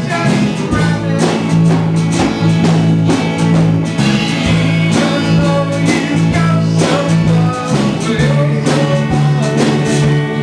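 Small band playing a country-pop song live: electric and acoustic guitars strummed to a steady beat, with a voice singing.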